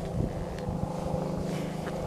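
A motor vehicle engine running steadily, a low even hum, with some low rumble and a few soft bumps.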